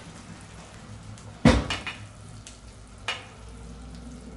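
Banana halves in butter and sugar caramel sizzling softly in a frying pan just after being flambéed with Grand Marnier, with a sharp knock about one and a half seconds in and a lighter one about three seconds in.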